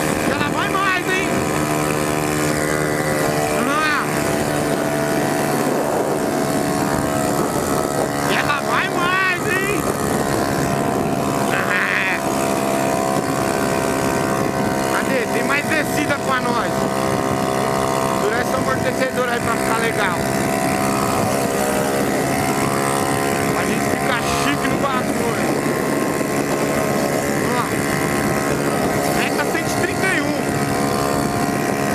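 Yamaha Factor 150's single-cylinder four-stroke engine running at steady high revs at highway speed near the bike's top speed. Short high chirps come and go over it.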